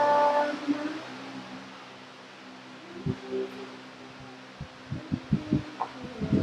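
Electric fan running with a steady hum in a small room, after a voice briefly holds a note at the start. A few light knocks and clicks from makeup items being handled come about halfway through and near the end.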